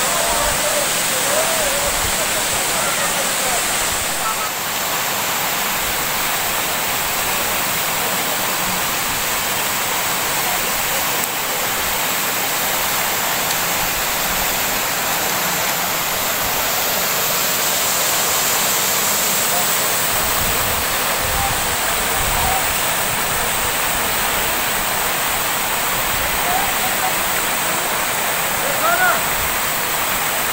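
Waterfall cascading down rock into a pool: a steady, loud rush of falling water.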